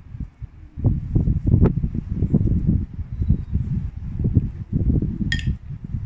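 Wind buffeting the microphone in irregular low gusts, with one short bright clink of a metal spoon on a bowl near the end.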